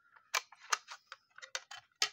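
Hard plastic graded-card slabs clicking and tapping against each other as they are handled, a quick irregular run of about ten light clicks.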